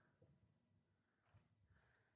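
Near silence, with faint scratching of a marker writing on a whiteboard.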